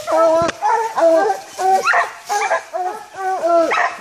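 Bear hounds barking treed at the base of a tree: a steady run of drawn-out bawling barks, about two a second, which tells the hunters the bear is held up the tree.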